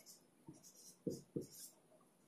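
Marker pen writing on a whiteboard: a few faint, short scratching strokes as digits are drawn.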